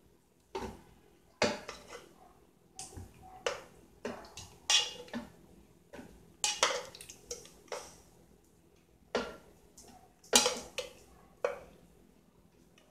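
Metal kitchen tongs knocking and scraping inside an aluminium pressure-cooker pot: a run of short, irregular clinks with brief ringing, made while cooked cassava pieces are lifted out into a blender.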